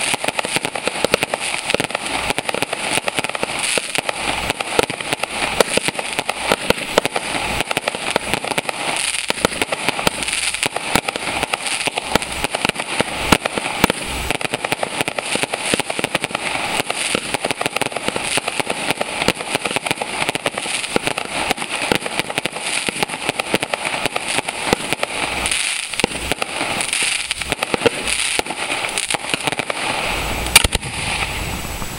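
Fireworks display firing without pause: a dense, continuous run of crackling and popping from aerial bursts, with frequent sharper bangs standing out.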